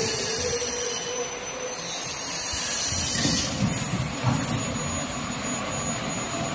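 Plastic thermoforming machine running: a steady mechanical clatter and hum, with a burst of air hiss about halfway through.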